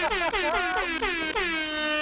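A comedic sound-effect stinger with brassy, horn-like blasts whose pitch glides up and down, settling into a held chord near the end.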